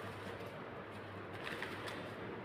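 Faint bird cooing over a low steady hum, with a few light clicks of a tarot deck being handled near the end.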